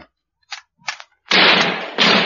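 A single gunshot about a second and a quarter in, sudden and loud, its noise trailing off over most of a second. A few brief faint clicks come just before it.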